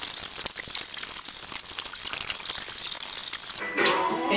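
Plastic cling wrap being pulled off its roll and wound around a person's body, a steady high crackle of many small ticks and snaps as the film peels away from the roll.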